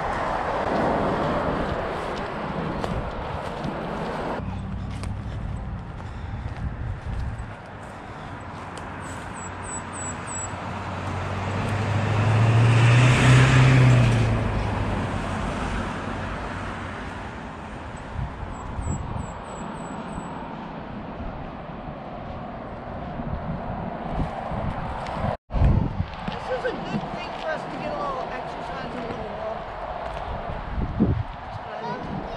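Outdoor roadside ambience with wind on the microphone, and a car passing by about halfway through, swelling to the loudest point and fading away.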